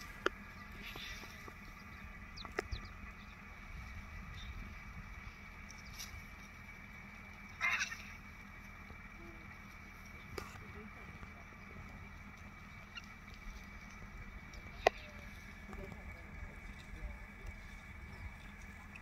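Vultures feeding at a carcass. The background is faint and steady, with a few sharp clicks and one short harsh bird call about eight seconds in.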